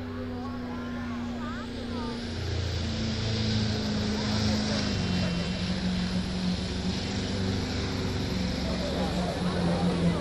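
Iveco truck's diesel engine pulling a weight sled under full load, its steady note dropping lower in two steps as the load builds.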